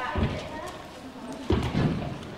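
Horse's hooves landing with dull thumps, one soon after the start and a louder cluster of several about one and a half seconds in.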